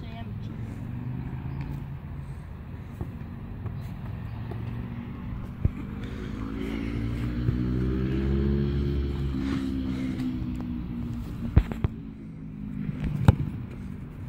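A vehicle engine passing nearby: its low hum rises in pitch and grows louder to a peak about eight or nine seconds in, then falls away. A few sharp knocks near the end.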